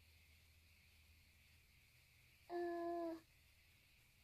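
A child's short, steady hum, 'mmm', while thinking over a question. It comes about two and a half seconds in and lasts under a second, with faint room tone around it.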